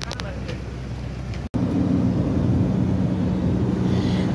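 Road and engine noise inside a moving car's cabin, low and rumbling. About one and a half seconds in it breaks off for an instant at a cut, then carries on as a steadier, slightly louder hum.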